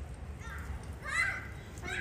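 Children's high voices calling out in short bursts over a steady low rumble, the loudest call about a second in.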